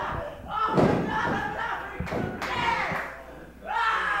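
A wrestler's body slamming down onto the wrestling ring mat: one heavy thud about a second in.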